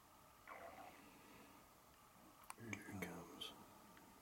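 Quiet human whispering in two short spells, the second with a little voiced sound, and a sharp click just before it.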